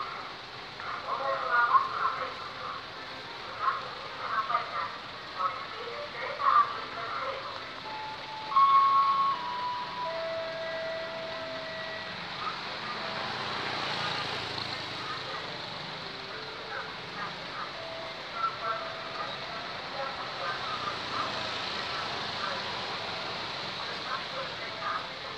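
Road traffic at night, with vehicle engines and a steady background of noise, mixed with people's voices. A few short steady tones sound around the middle, and a rush of noise swells and fades about halfway through.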